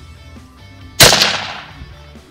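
A single rifle shot about a second in, loud and sudden, its report dying away over most of a second. Fired from a vehicle at a rabbit.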